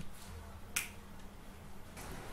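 A single sharp computer mouse click about three quarters of a second in, over a low steady hum.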